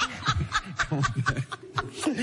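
Laughter: a rapid run of short, breathy laugh pulses that trails off near the end.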